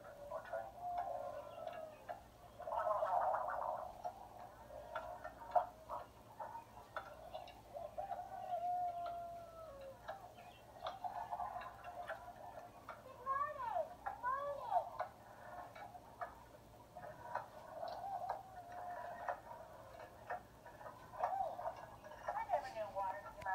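Tinny sound playing from a tablet's small speaker: faint voices mixed with many short clicks, and a few quick rising-and-falling whoops about two-thirds of the way through.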